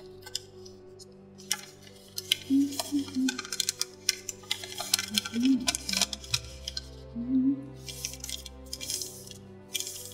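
Thin origami paper crinkling and rustling in irregular crackles as it is folded and creased by hand, over soft background music.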